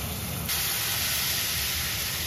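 Meat frying in hot oil, a steady sizzle that turns suddenly louder and brighter about half a second in, as a wok of meat bubbles in its sauce.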